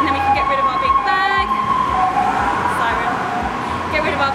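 A woman talking, over a steady high tone and a low rumble of traffic.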